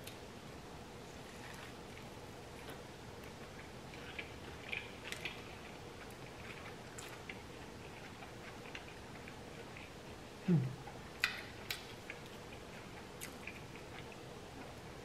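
Close-miked chewing of a soft almond-flour taco of grouper fish: quiet, with scattered wet mouth clicks and smacks. There is a short hummed "mm" of approval about ten and a half seconds in.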